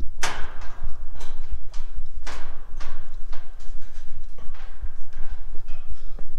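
Footsteps on a galvanised steel grating walkway, each step a sharp metallic clank, roughly one a second, the loudest near the start and about two seconds in. A steady low rumble runs underneath.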